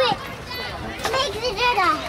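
Young children's high-pitched voices calling out and chattering while playing, with a couple of short knocks.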